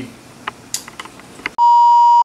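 A loud, steady electronic beep tone at one fixed pitch starts about a second and a half in, after a stretch of faint small clicks. It is an edit beep dropped between takes as the picture cuts to black.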